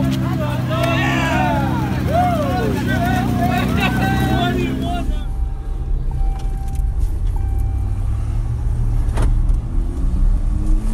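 Nissan GT-R engine idling steadily while people shout over it. About halfway through, the sound cuts abruptly to a low rumble with a few sharp clicks.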